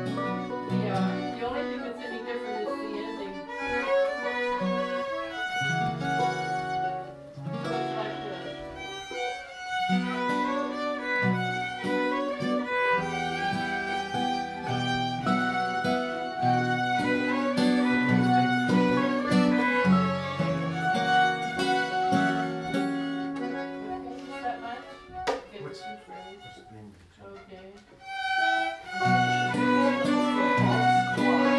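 Fiddle and guitar playing a Québécois waltz, the melody over a steady strummed accompaniment in waltz time. The playing thins out and grows quieter a few seconds before the end, then comes back in full.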